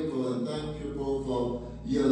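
A man's voice singing slowly into a microphone in long held notes, over low sustained bass notes that shift pitch about half a second in.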